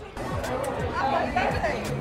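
Indistinct chatter of several voices, with music playing in the background.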